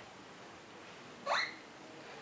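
A baby's single short vocal sound that rises quickly in pitch, heard a little past halfway through.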